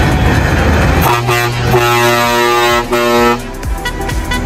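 A truck's air horn blown in a long blast with two short breaks, starting about a second in and stopping a little after three seconds, after a low engine rumble.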